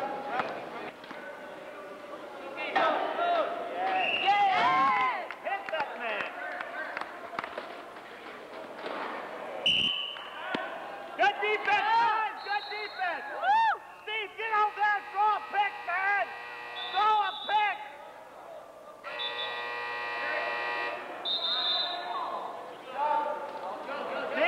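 Players and officials calling and shouting in a large gym during a wheelchair rugby game, with a single sharp knock partway through. Near the end a steady electronic buzzer sounds for about two seconds, with a few brief high tones around it.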